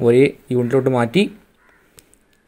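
A man's voice speaking in two short stretches, then a brief pause.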